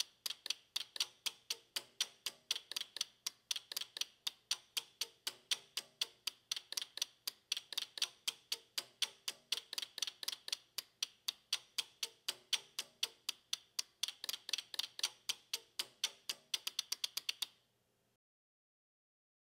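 Relays of a relay computer's tape program loader clicking in a quick, slightly uneven rhythm, about four or five clicks a second, as its sequencer steps through latching each program byte and writing it to memory. The clicks bunch up faster near the end and then stop as the last byte is loaded.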